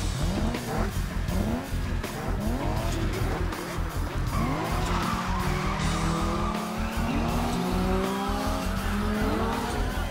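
Race car engines revving hard and tyres squealing as the cars launch off the start line, laid over loud music with a heavy bass beat. The engine note climbs in repeated rising sweeps, then from about halfway through holds at high revs under a steady tyre squeal.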